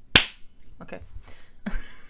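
A single sharp hand clap, a sync clap for lining up the recorded audio with the video.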